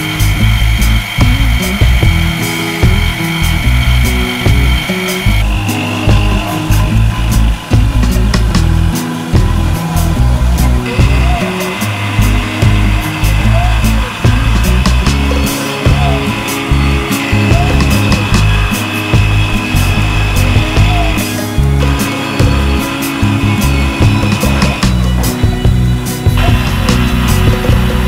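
Background music over the high steady whine of a CNC mill's spindle and end mill cutting a block of UHMW plastic; the whine shifts pitch a few times.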